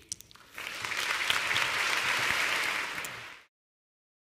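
Audience applauding, starting about half a second in and cut off abruptly near the end.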